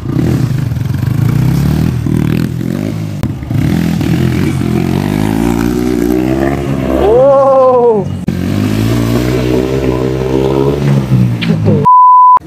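Motorcycle engine with an aftermarket exhaust running and being revved up and down under stunt riding, its pitch wandering throughout, with one quick rev that rises and falls about seven seconds in.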